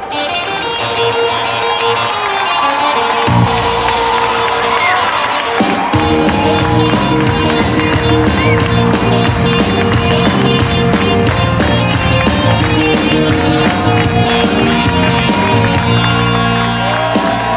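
Retro rock-and-roll music starting up. The low end comes in about three seconds in, and the full band with a steady beat from about six seconds.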